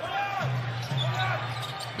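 Arena game sound from a basketball broadcast: crowd noise with music over the arena speakers, and a basketball being dribbled on the hardwood floor.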